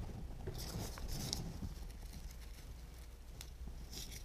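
Faint rustling and a few light clicks of hands handling foliage and wire at the vase, over a low steady room hum.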